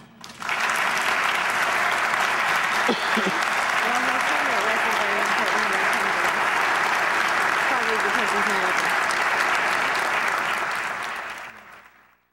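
Audience applause in an auditorium, starting about half a second in, holding steady and fading out near the end, with faint voices in the crowd.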